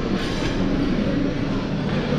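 Steady hubbub of a crowded restaurant dining room: many diners' voices blending into a continuous din.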